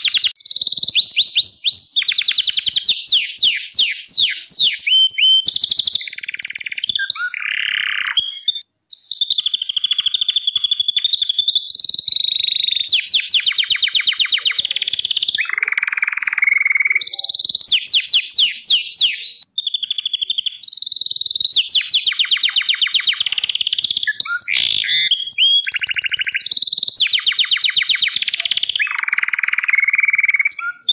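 Crested Gloster canary (corona) singing a long, loud song of rapid trills and rolling high-pitched phrases. It breaks only briefly, about nine and twenty seconds in.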